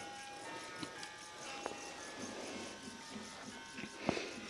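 Faint, tinkly electronic melody of steady, pure notes from a baby's musical toy, with a small click about halfway through.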